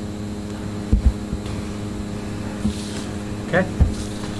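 Steady low mechanical hum of a meeting room picked up through the room's microphones, with a few soft low thumps about a second in and again later.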